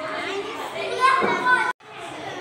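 Young children's voices talking and calling out over one another. Near the end the sound drops out suddenly for a moment.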